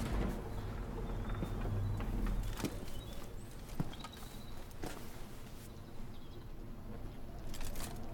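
Quiet room tone: a low steady rumble with a few soft knocks and rustles, and faint bird calls in the background.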